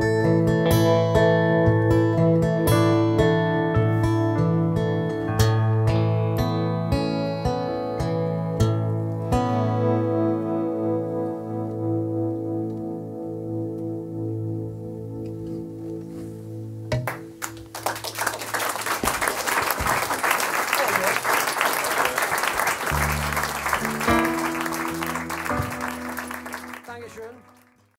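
Acoustic guitar, electric guitar and keyboard finishing a song: notes and chords for about ten seconds, then a final chord left to ring and fade. About seventeen seconds in, audience applause starts and runs on for roughly ten seconds, with a few low notes sounding under it, before fading out at the end.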